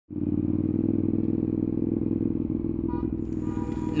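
Motorcycle engine running at a steady pitch, heard from the bike's camera.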